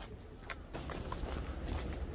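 Footsteps of a person walking on a paved path, over a steady low rumble.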